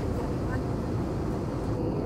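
Jet airliner cabin noise in flight: the steady low rumble of the engines and airflow, heard from inside the cabin.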